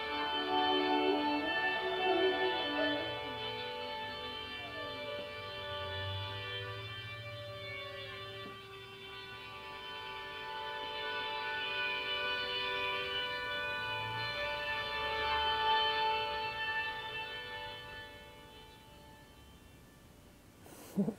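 Layered loops of sustained, organ-like notes played back from a looper pedal, with a few sliding notes early on. The sound swells and then fades out over the last few seconds.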